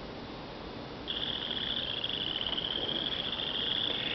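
A steady high-pitched insect trill begins about a second in and carries on, creeping slightly upward in pitch, over faint hiss.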